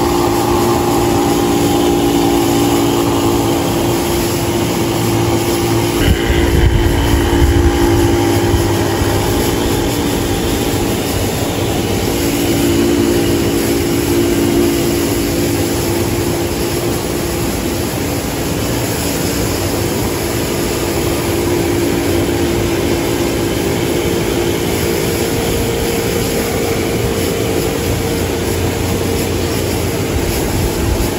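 A motor running steadily, a constant-pitched hum that holds without a break.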